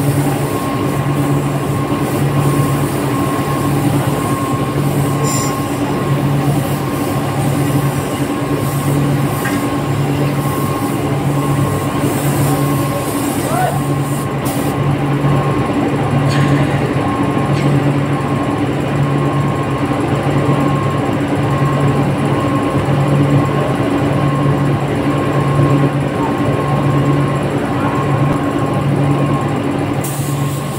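Steady loud hum of factory spray-booth machinery, its low drone pulsing about once a second. An air spray gun hisses through the first half and stops about halfway.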